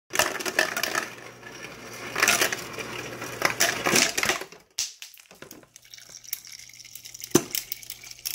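Refrigerator door ice dispenser running, its motor humming under the clatter of ice dropping into a ceramic mug. It stops for about a second around halfway, then runs again, with one sharp clack near the end.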